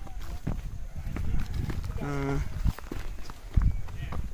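Footsteps walking uphill on a dirt and stone footpath, an irregular run of scuffs and treads. A short voice sound comes about halfway through.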